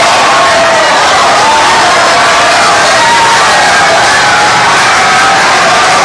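Bar crowd cheering and shouting together without a break, many voices overlapping, loud and steady: fans celebrating a championship win.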